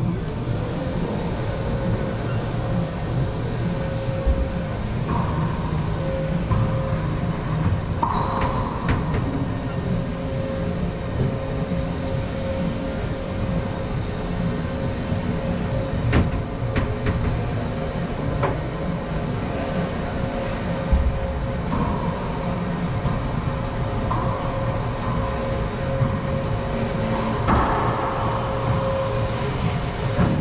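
A steady low mechanical drone with a constant hum tone in an enclosed racquetball court, with a few faint knocks.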